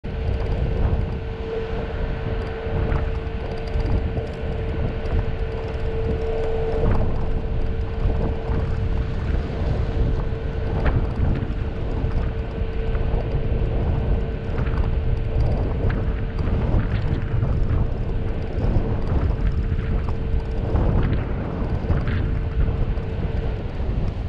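Vehicle driving on a gravel dirt road: a steady low rumble of tyres and engine, with stones clicking and popping under the tyres. A steady hum runs alongside and stops near the end.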